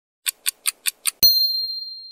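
Intro logo sound effect: five quick ticks, about five a second, then one bright bell-like ding that rings on and fades over about a second.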